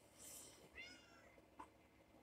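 Near silence, with one faint short meow-like animal call a little under a second in and a few faint clicks.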